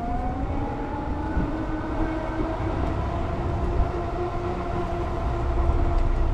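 Lectric XP e-bike's rear hub motor whining under pedal assist as the bike picks up speed. The whine rises in pitch over the first second, then holds steady. Wind rumbles on the microphone underneath.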